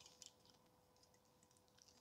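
Near silence, with a faint steady hum and a couple of faint clicks about a quarter second in.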